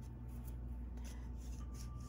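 Faint rustling and light ticks of paper as small stickers are peeled and handled between the fingers, over a low steady hum.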